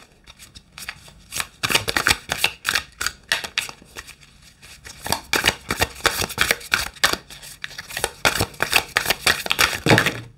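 Tarot deck being shuffled by hand, a dense run of quick card clicks and flicks starting about a second in.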